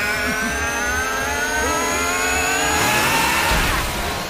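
Chainsaw engine revving hard, its pitch climbing slowly.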